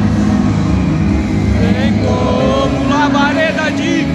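Congregational worship music through a large church's sound system: a heavy, steady low bass rumble with many voices singing over it. The singing comes forward about halfway through.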